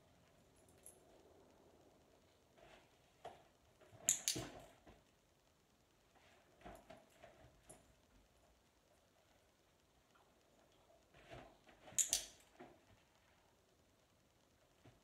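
Soft scuffs and knocks of a dog stepping in and around an open suitcase, with two sharp clicks, one about four seconds in and one about twelve seconds in.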